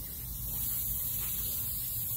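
Steady hiss of a lawn sprinkler spraying water, with a low rumble of wind on the microphone beneath it.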